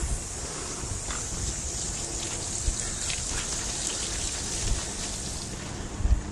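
Recumbent trike tyres hissing through water on a wet concrete path, a steady spray of water noise.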